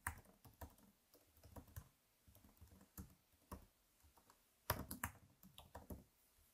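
Faint computer keyboard typing, scattered keystrokes with a louder run of several quick keys about five seconds in.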